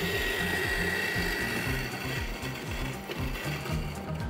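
Mahlkönig coffee grinder running, grinding coffee with a steady whine that eases off near the end, over background music with a steady beat.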